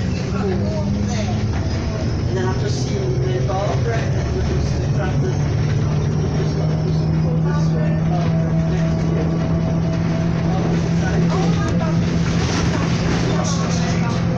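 Bus engine running under way, heard from inside the passenger cabin over road noise. Its low steady tone drops in pitch about a second and a half in, then holds even.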